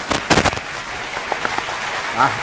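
A quick cluster of sharp crackles in the first half-second, then a steady hiss.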